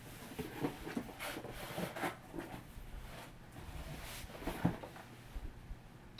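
Cardboard and paper handled in a shipping box: flaps and packing paper rustling, crinkling and scraping in a run of irregular crackles as the box is opened and its contents lifted out.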